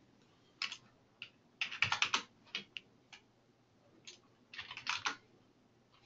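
Computer keyboard typing in short, scattered runs of keystrokes with pauses between, busiest about two seconds in and again near the end.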